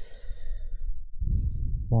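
A man sighing, one breathy exhale close to the microphone lasting about a second, over a steady low rumble.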